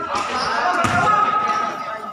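A basketball bouncing on the court floor, with one clear thump just under a second in, under the shouting voices of players and onlookers.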